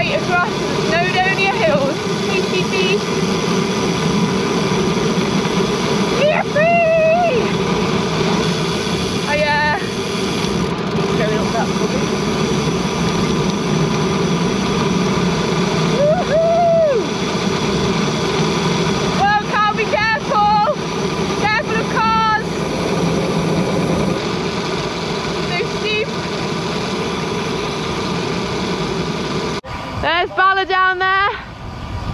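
Steady wind and tyre noise from a road bike coasting downhill, with a few short voice calls and snatches of speech over it.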